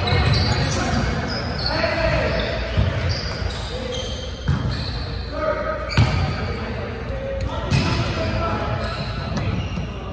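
Volleyball rally in a large gymnasium: the ball slapping off forearms and hands, and once off the hardwood floor, in sharp hits every second or two, echoing around the hall, with players calling out between the hits.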